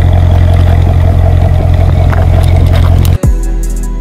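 Corvette V8 exhaust giving a loud, steady rumble that cuts off abruptly about three seconds in. Music with a drum beat starts right after.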